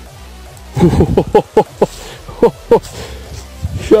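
A man's voice making wordless sounds: a quick run of short notes, each falling in pitch, starting about a second in, with two more a little later.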